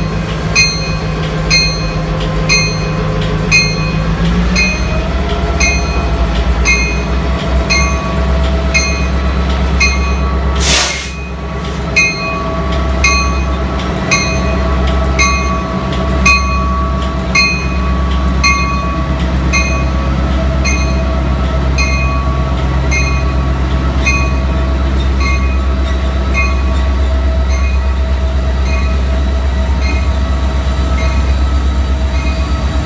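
Diesel locomotives, an EMD GP38-2 leading, running at low throttle as the train rolls slowly past close by. A bell rings steadily about one and a half times a second, and a short burst of hiss comes about eleven seconds in.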